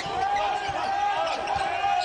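A basketball dribbled on a hardwood court, a bounce every third to half second, over arena crowd murmur. A steady, slightly wavering tone is held through it.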